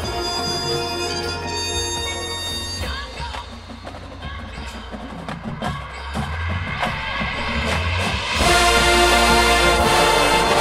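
Marching band playing: held wind chords, then a quieter stretch of scattered percussion hits, then the full band comes in loudly on a sustained chord about eight and a half seconds in.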